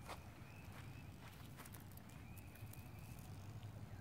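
Near silence, with a few faint, soft clicks and crunches as onion sets are pressed by hand into loose, dry tilled soil.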